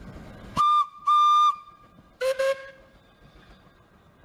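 Steam locomotive whistle: a short high toot, then a longer one at the same pitch, followed about two seconds in by two quick lower toots.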